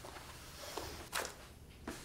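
Quiet room tone, with one brief soft sound a little over a second in.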